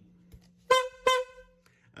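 Two short honking tones at the same pitch, less than half a second apart, the second ringing a little longer, like a horn sound effect.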